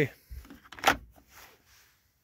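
Orange plastic top cover of a Stihl MS 250 chainsaw being handled and set back over the air filter: faint rubbing, with one sharp plastic click just under a second in.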